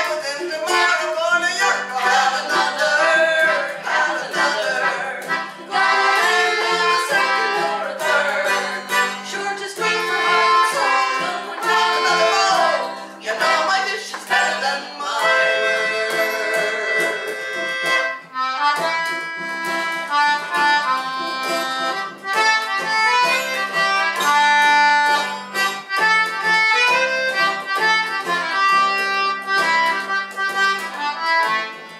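Folk band playing an instrumental break, with a concertina carrying the tune over acoustic guitar and a bowed string instrument. The first half has wavering pitches; the second half settles into steady held notes.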